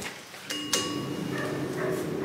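Small poodle whining at a door, with a sharp click about half a second in.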